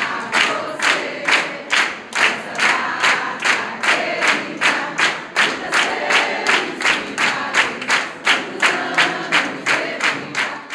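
A small group singing a birthday song together while clapping in time, about two claps a second.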